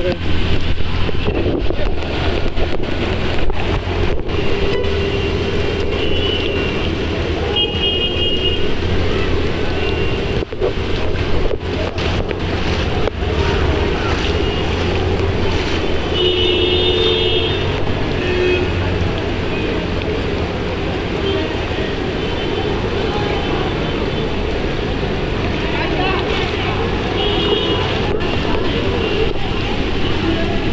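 Steady low hum of a running vehicle engine under a constant wash of heavy rain and running floodwater on a waterlogged road.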